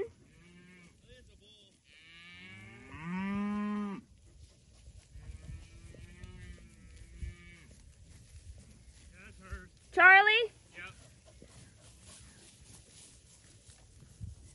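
Beef cattle mooing as the herd moves. A long, low moo comes about two seconds in and lasts about two seconds. Fainter moos follow, and a short, loud, higher call rises in pitch about ten seconds in.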